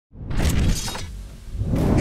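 Intro sound effect: a sudden shattering crash over music that dies away within about a second, then a sound that swells up again near the end.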